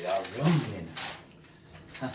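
A sheet of baking paper rustling as it is handled and unfolded, with a brief voice-like sound near the start.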